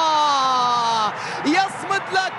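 A football commentator's long, drawn-out shout as a goal goes in: one held cry, sliding slowly down in pitch, that breaks off about a second in, followed by quieter short vocal sounds.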